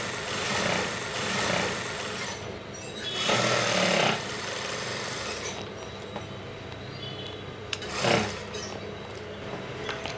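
Industrial sewing machine stitching in runs that start and stop as fabric is fed under the needle. The loudest run comes a little over three seconds in, and a short burst follows near the end.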